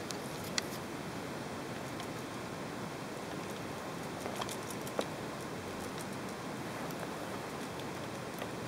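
Steady hiss of room and microphone noise with no motor running, broken by a few faint clicks, one about half a second in and a sharper one about five seconds in.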